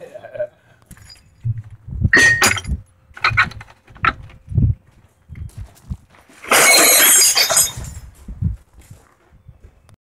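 Small steel scrap parts clanking: a few separate metal knocks, then about six and a half seconds in a bucketful of small steel parts poured into a steel truck bed with a loud rattling crash lasting about a second.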